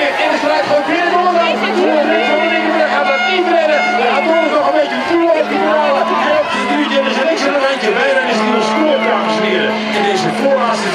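Crowd of spectators shouting and cheering, many voices overlapping, with a steady low hum underneath.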